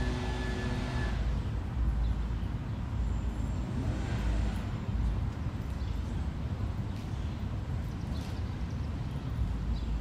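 Outdoor background noise: a steady low rumble with no distinct events.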